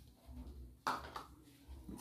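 One brief, soft knock about a second in, over a faint low hum: a plastic measuring cup against a saucepan as the last of the sugar is emptied out.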